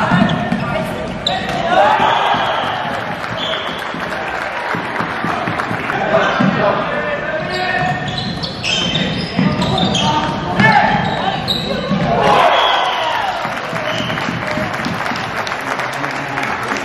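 Floorball play on an indoor court, ringing through a large hall: repeated knocks of sticks and the plastic ball, shoe squeaks on the floor, and players shouting.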